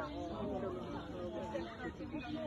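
Indistinct chatter of people talking, with no clear words.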